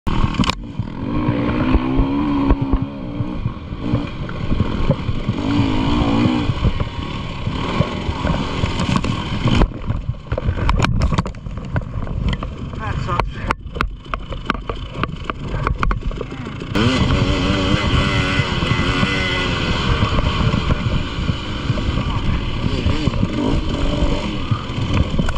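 Off-road dirt bike engine revving up and down over rough sandy trail, with wind and rattle on the camera. Around the middle the engine sound drops back and is broken by a run of sharp clicks and knocks, as the bike is down in the sand. About seventeen seconds in the revving comes back abruptly.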